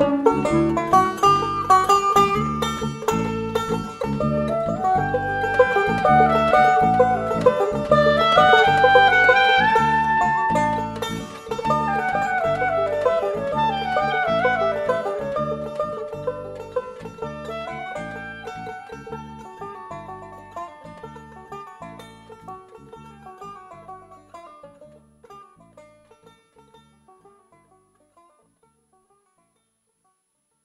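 Instrumental ending of a studio-recorded song: melody over a steady beat, fading out over the second half and ending in silence.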